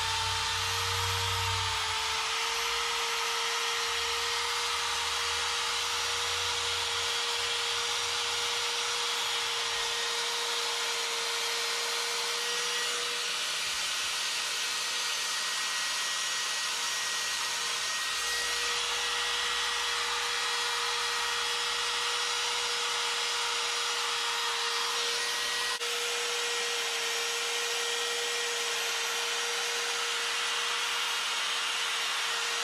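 Electric die grinder running at a steady high whine while its flame-shaped carbide burr grinds into the wood of a carved bear's face, rounding out the eyeballs.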